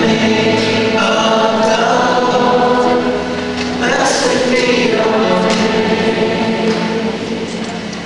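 Many voices singing a worship song together like a choir and holding long notes: a concert audience singing along with the performers, with a brief dip about three seconds in and fading near the end.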